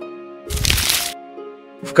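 Quiet background music with held tones, cut across about half a second in by a short crackling noise effect lasting about half a second: the transition sound for the change to the next quiz slide.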